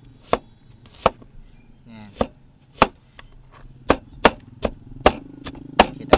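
Cleaver chopping an onion on a wooden cutting board: about ten sharp knocks of the blade hitting the board, spaced out at first and coming quicker in the second half.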